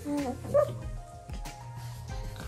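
Background music with two short pitched vocal sounds from the baby in the first second, the first falling in pitch, the second higher.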